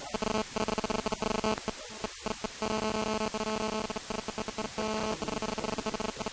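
Stuttering electronic buzz of a garbled audio feed: rapid pulses with several steady tones, and no words can be made out.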